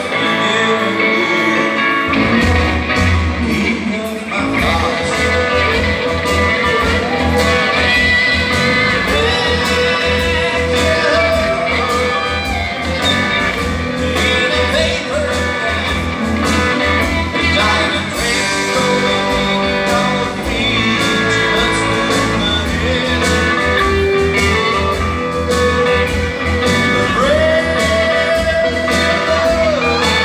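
Live rock band playing with drums, bass guitar, electric and acoustic guitars; the bass and drums come in fully about two seconds in and drive a steady beat from there.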